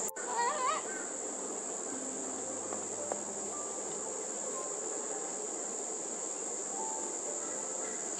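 A steady, high-pitched insect drone, with a short warbling bird call just under a second in and a few faint, short chirps later on.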